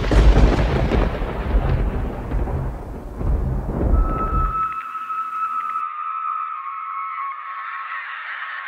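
A sudden loud boom with a deep rumble that dies away over about four and a half seconds, followed by a thin, tinny sound holding two steady tones.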